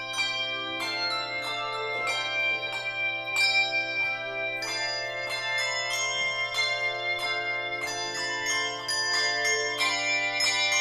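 A handbell choir playing a piece: handbells struck several times a second, their chords ringing on and overlapping.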